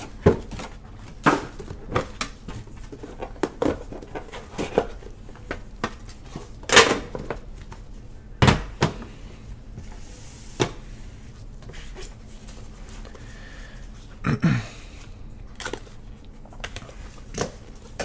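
Gloved hands handling and stacking Panini Immaculate card boxes on a table: irregular knocks and clicks as the boxes are lifted, set down and slid together, the loudest knock about eight and a half seconds in.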